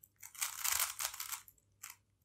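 A stickerless 3x3 puzzle cube being turned by hand: a quick run of plastic layers clicking and scraping as they are twisted in fast succession, then a single short click near the end.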